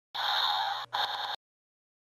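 A creature growl sound effect for a toy dragon, a rough snarl about a second long, broken briefly once near its middle.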